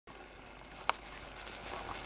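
Onions cooking in butter and water in a stainless steel pan on a gas hob: a faint, steady simmering hiss. A single sharp click sounds a little under a second in.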